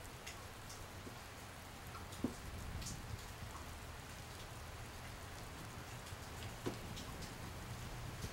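Faint steady rain, with a few sharper drip-like ticks, one about two seconds in and another near the end, over a low hum.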